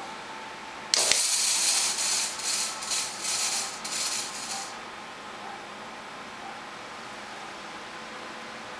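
Fog machine firing a burst of fog: a loud hiss that pulses unevenly, starting suddenly about a second in and stopping just before five seconds. After it, the steady whir of the computer's case fans.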